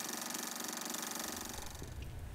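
Film projector running, its mechanism clattering in a fast, even rattle. A low rumble comes in near the end.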